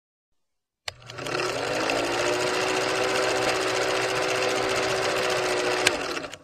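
Film projector running: a sharp click about a second in, then a fast, steady mechanical clatter with a low hum. There is another click just before the end.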